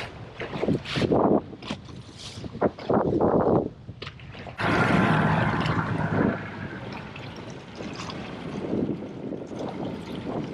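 Wind buffeting the microphone and water splashing around a boat hull on open sea, in uneven gusts. About halfway through, a louder steady rush with a low engine-like hum sets in and then eases off.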